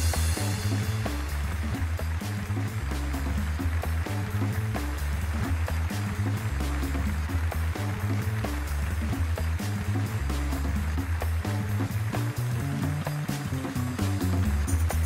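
Background music with a heavy bass line and a steady beat, opening with a bright crash.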